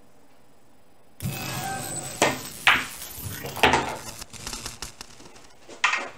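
A pool shot: sharp clacks of billiard balls striking each other and the cushions, four distinct hits spread over about four seconds, with the last one just before the end.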